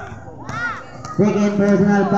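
Spectators shouting at a basketball game: a short high-pitched shout about half a second in, then a long drawn-out call in a lower voice, over crowd murmur.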